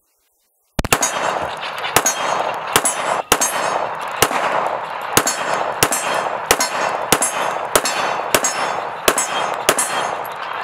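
A pistol firing .45 ACP rounds, shot after shot: about a dozen sharp shots at a steady pace of roughly one every 0.6 to 0.8 seconds, starting about a second in, with a steady rushing noise filling the gaps between them.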